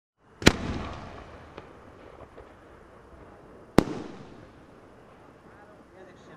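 Aerial firework shell: a sharp bang about half a second in as it is fired from its mortar, then a second sharp bang a little over three seconds later as the shell bursts. Each bang echoes away, and the first is the louder.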